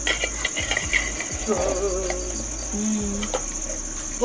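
Crickets chirping in a steady high-pitched drone, with a few light clicks and scrapes of a metal ladle against a steel cooking pot in the first second or so.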